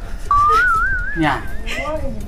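A single whistled note that starts suddenly, then rises and wavers up and down in pitch for about a second and a half.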